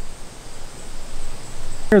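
Faint, steady outdoor background hiss with no distinct events. A man's voice starts at the very end.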